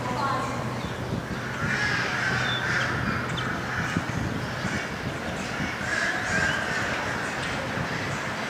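Ducks quacking in two spells, with people talking in the background.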